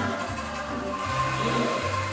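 Many bamboo angklung shaken together to play a tune, over a bass line that changes note about every half second; a single held note comes in strongly about halfway through.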